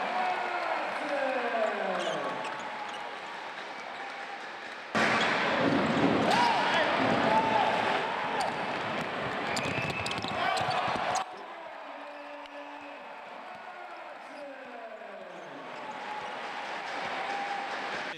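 Basketball game sound in an arena: a ball bouncing and short sneaker squeaks on the hardwood court over crowd voices. The sound jumps abruptly louder about five seconds in and drops back just as suddenly about six seconds later.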